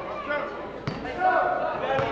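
A basketball bouncing on a hardwood gym floor, with one sharp bounce about a second in, among the voices of players and spectators calling out in the gym.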